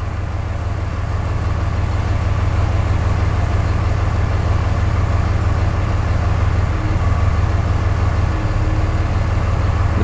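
Diesel truck engine idling steadily, a low, even rumble heard from inside the cab.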